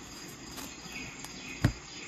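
Tarot cards being handled on a table: one sharp tap about three-quarters of the way in, over a faint, steady, high-pitched background with brief faint chirps.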